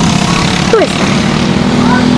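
Briggs & Stratton LO206 single-cylinder four-stroke kart engines running at speed as a pack of racing karts laps the track, a steady engine drone with a held tone coming up in the second half.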